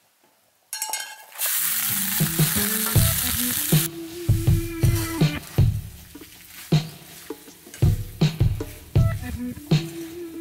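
Cold leftover pasta hits a hot frying pan on a cast-iron wood-stove top and sizzles loudly for a couple of seconds. It then fries more quietly while being stirred. Music plays underneath.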